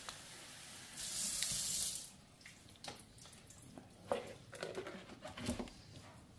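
Kitchen tap running into the sink as a potted orchid is watered, swelling for a moment and then shut off after about two seconds. A few light knocks and clicks follow.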